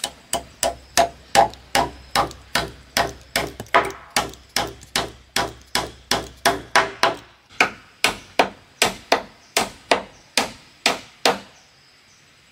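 A hammer driving nails through a wooden plank into a wooden post, with quick, even strikes about three a second. There is a short pause about seven and a half seconds in, and the strikes stop near the end.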